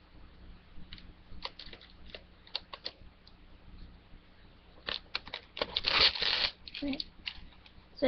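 Plastic shrink wrap being picked at and peeled off a DVD case: scattered small clicks and crinkles, then a louder burst of crinkling and tearing about five seconds in that lasts over a second.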